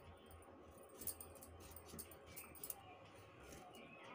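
Faint, irregular clicks of a kitchen knife cutting a raw turnip into small pieces by hand.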